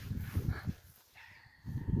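Wind buffeting the microphone in irregular low gusts on an exposed hilltop, with a brief lull about a second in before a strong gust near the end.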